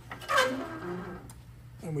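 Light metal clinks and a short scrape from a Hossfeld bender and four bent quarter-inch steel rods, as the bending arm comes up against its stop. The loudest part is a brief noisy clatter about half a second in, which fades over the next second.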